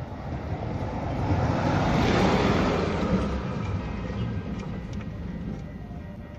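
Engine oil pouring out of the opened drain plug hole of a 2007 Honda CR-V into a plastic drain pan: a splashing noise that swells about a second in, is loudest around two seconds, then eases off.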